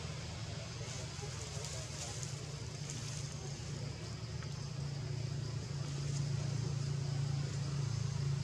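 Steady low hum of a running motor, growing louder from about five seconds in, over a faint hiss.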